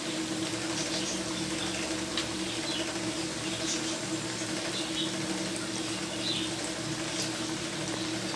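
Battered, noodle-crumbed potato triangles deep-frying in hot oil in a pan: a steady sizzle with scattered small crackles.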